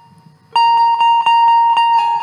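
Indian banjo (bulbul tarang) starting to play about half a second in, after a faint fading note: one note plucked over and over, about four strikes a second.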